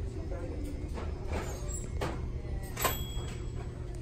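Thrift-store background: a steady low hum with indistinct voices, and three short sharp knocks, the loudest about three quarters of the way through.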